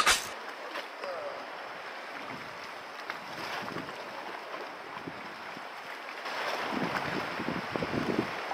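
Steady wind and sea noise at a rocky shore, with no clear tones, growing a little louder from about six seconds in.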